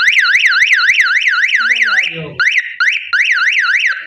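SOGO 12-volt electronic siren horn sounding one of its tones, a fast up-and-down warble of about four or five sweeps a second. It breaks off briefly about two seconds in, starts again and cuts off near the end.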